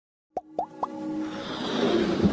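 Animated intro sound effects: three quick plops about a quarter second apart, followed by a swelling electronic music riser that grows steadily louder.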